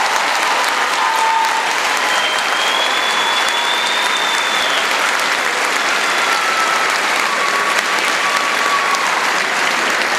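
A large audience applauding steadily in a big hall, a long round of applause.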